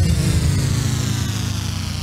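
Closing sustained electronic tone of a TV show's intro theme, its pitch sliding slowly downward as it gradually fades out.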